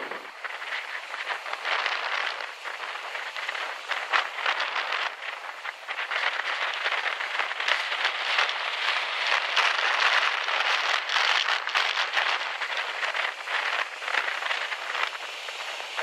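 High surf breaking near the shore: a continuous rushing hiss of whitewater that swells and ebbs with the waves, loudest around the middle, with little deep rumble.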